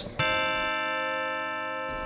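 A single bell-like chime from the Assembly chamber's voting system. It starts sharply a moment in, rings steadily while fading a little, and stops near the end. It signals that the roll is open for voting.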